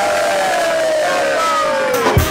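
A group cheering in a toast, led by one long drawn-out shout whose pitch slowly falls.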